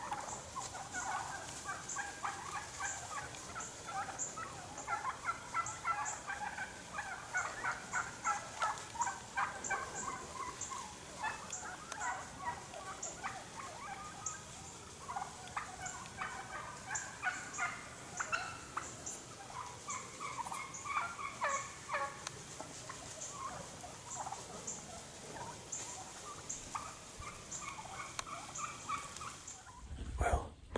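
A flock of birds calling: many short calls overlapping in a dense, irregular chatter that thins out now and then. A faint high ticking runs behind it.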